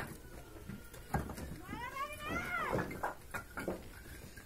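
Fired bricks clinking and knocking as they are lifted and stacked, and about halfway through a single drawn-out call that rises and then falls in pitch.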